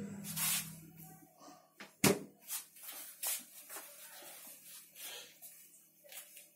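Faint handling knocks and clicks from a hand-held camera being moved about, the loudest about two seconds in, over a low steady hum that stops a little over a second in.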